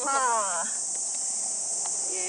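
Steady, high-pitched drone of insects throughout, with a woman's drawn-out, falling voice in the first half second and a faint click near the end.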